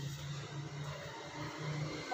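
Room tone between words: a low steady hum with a faint hiss underneath.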